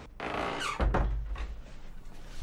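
A door creaking open on its hinges, a gliding squeak, followed by a low thud about a second in.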